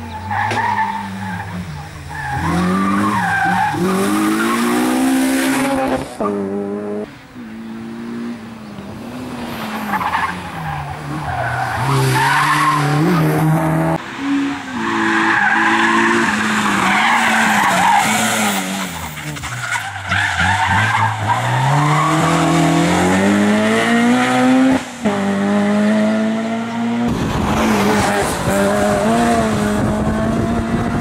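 Honda Civic Type R's four-cylinder engine revving hard, its note climbing and dropping again and again as it accelerates and brakes through tight bends, with tyre squeal and skidding on the corners. The sound changes abruptly a few times where separate passes follow one another.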